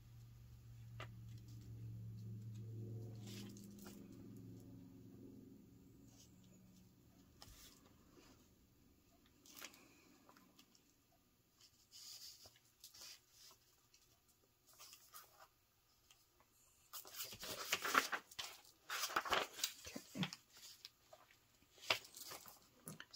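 Sheets of paper being handled on a craft table: mostly quiet with scattered light taps and rustles, then a few seconds of louder paper rustling and crinkling near the end. A faint low hum sits under the first few seconds.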